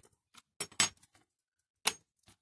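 Small die-cast metal parts clicking and clinking as the removed baseplate and a loose wheel-and-axle set of a Dinky Toys model are handled and set down on a cutting mat. There is a cluster of light clicks about half a second in and one sharper click near the end.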